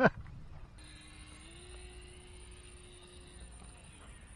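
Small RC plane's 1806 2300KV brushless electric motor and propeller droning faintly in the distance, stepping up slightly in pitch about a second and a half in and dying away near the end.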